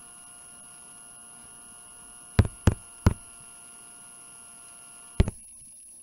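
Steady electrical mains hum with thin, faint whine tones, broken by sharp clicks: three in quick succession about two and a half to three seconds in and a fourth near the end. The clicks fall as the right-hand working is erased from the digital whiteboard, typical of mouse or stylus clicks. The hum cuts out just after the last click.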